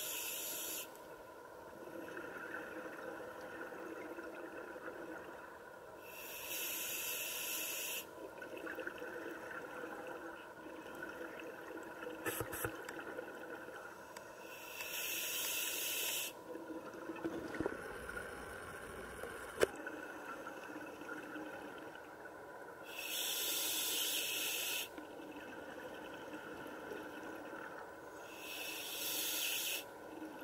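Scuba diver breathing through a regulator underwater: five bubbly exhalations of about two seconds each, every seven or eight seconds, over a steady underwater hiss. A sharp click comes about twenty seconds in.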